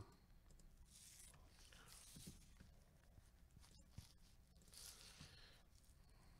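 Near silence: room tone, with a few faint soft rustles and one small click about four seconds in.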